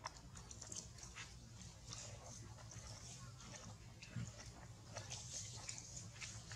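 Faint scattered clicks and smacks of a macaque biting and chewing rambutan fruit.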